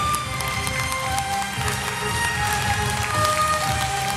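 Violins playing a slow melody of long held notes, each note sustained for about a second before moving to the next.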